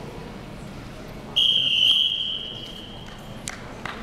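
One long, high whistle blast starting about a second and a half in, then fading over a second or so, signalling the stop at the end of the round.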